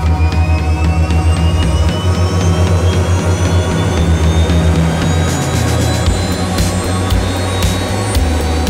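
Music with a pulsing bass line that changes notes every few seconds and a high tone that rises slowly in pitch throughout.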